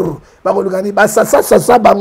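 A man's voice speaking fast at a fairly level, chant-like pitch, with a short break just after the start.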